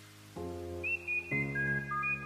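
Music: a high, whistle-like melody stepping downward over held low chords that change about once a second.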